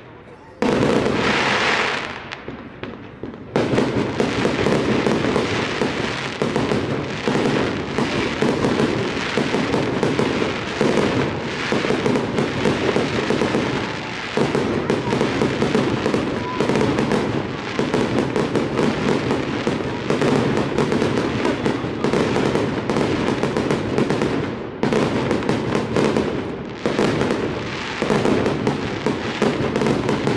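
Fireworks display: aerial shells bursting and crackling overhead. After a short lull in the first few seconds, the bangs and crackles come densely and without a break.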